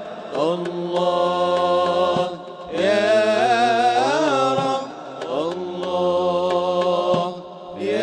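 Male voices singing an Islamic nasheed (inshad) in long held, chant-like notes, in three phrases with short breaks between them and a fourth beginning near the end.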